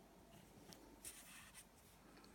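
Near silence with a few faint, short scratching sounds, the loudest cluster about a second in.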